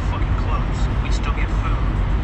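Steady low rumble of idling trucks and traffic, with faint speech from a phone's speaker over it.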